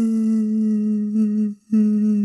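A voice wailing in a long, steady, hum-like cry, the crying of a weeping woman. It breaks off about one and a half seconds in, then starts again at the same pitch.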